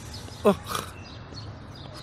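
A single short cry about half a second in, falling steeply in pitch, followed by a brief breathy hiss.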